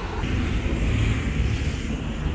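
City road traffic on a wet avenue: car and bus engines running, with a steady hiss of tyres on the wet road.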